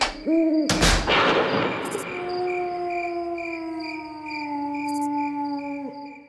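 Cartoon night-time sound effects: a short owl-like hoot, a sharp thump about a second in, then a long held tone sliding slowly downward over evenly repeating cricket chirps, fading out at the end.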